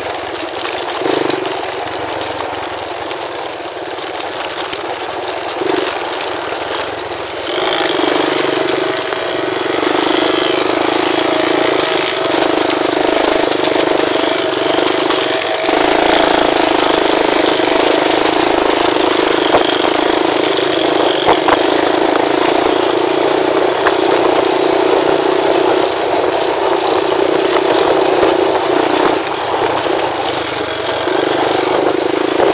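Quad bike engine running continuously, getting louder about seven or eight seconds in and staying up from there.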